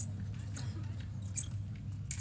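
Fencing shoes squeaking on the piste during footwork: a few short, high squeaks, the clearest about a second and a half in, over a low steady hall hum.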